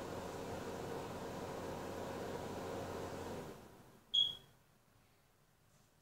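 A steady electric hum, like an appliance's motor, dies away and stops about three and a half seconds in. Half a second later comes a single short, high electronic beep, the loudest sound, and then near silence.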